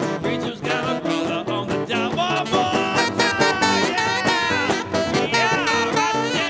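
Live swing band playing an instrumental break: acoustic guitar strumming a swing rhythm, with a saxophone line coming in about two seconds in and playing bending, sliding notes over it.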